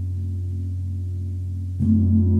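Large gongs played with a soft mallet: a deep, steady ringing hum with a slow pulsing beat, then a fresh stroke near the end that makes the ringing swell louder.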